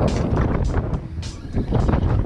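Wind buffeting the microphone in an open boat: a steady low rumble broken by irregular sharp gusts.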